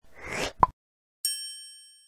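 End-card sound effects: a short whoosh, a brief pop, then a bright bell-like ding about a second and a quarter in that rings and fades away.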